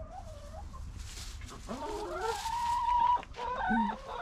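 Hens calling: a faint wavering call at the start, then one long, drawn-out call about halfway through and a shorter call near the end.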